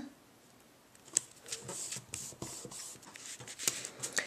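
Cardstock being handled and pressed into place on a card base: faint rustling and small clicks of paper, with a sharper click about a second in.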